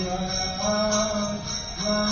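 Devotional mantra chanting: a single voice sung in long, held notes that slide from one pitch to the next, with a steady high-pitched whine behind it.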